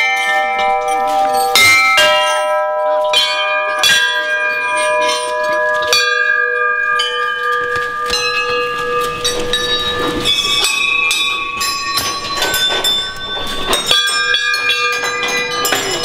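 Struck bell-like tones ringing one after another, a new strike every second or two, each ringing on with long steady notes that overlap the next.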